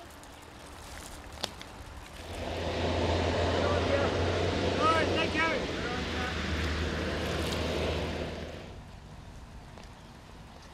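Tyre noise on a wet road. It rises about two seconds in, holds for around six seconds and fades away.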